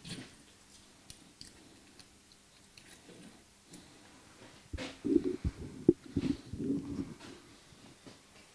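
A microphone in a furry windshield being handled and moved close: faint clicks at first, then about five seconds in a run of irregular knocks, rubs and low rumbling that lasts about two seconds.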